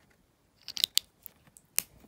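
Sharp clicks and crackles of thin plastic advent-calendar packaging being handled by fingers: a quick cluster about three quarters of a second in and a single sharp click near the end.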